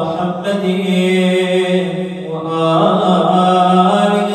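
A man's voice chanting an Arabic supplication in a slow, melodic recitation, with long held notes. The voice eases off briefly about two seconds in, then takes up the next held phrase.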